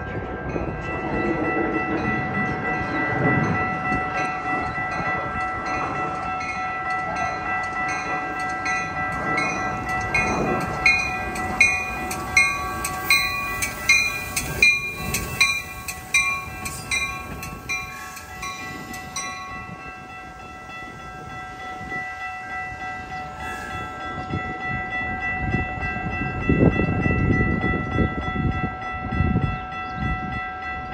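Metra commuter train at the station, its rumble under a steady ringing. A fast, even striking rings over it through the middle and stops about two-thirds through. Gusts of wind hit the microphone near the end.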